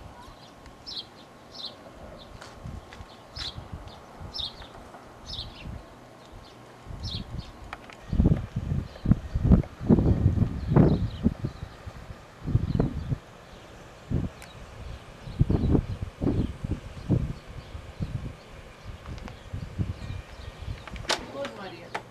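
A small bird chirping, short high calls about once a second, then a stretch of loud irregular low rumbling bursts on the camcorder microphone.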